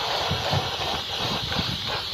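Aerosol can of dye-penetrant developer spraying onto a steel rail: a steady hiss, with irregular low bumps underneath.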